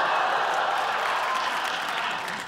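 Sitcom studio audience laughing and applauding in a steady, dense wave after a punchline, easing slightly near the end.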